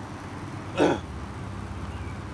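A man's single short chuckle about a second in, over a steady low hum.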